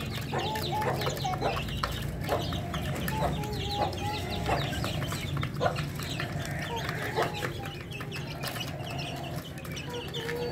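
A group of young Aseel-desi mix chickens peeping and clucking, with many short, high chirps overlapping throughout and some lower calls among them, over a steady low hum.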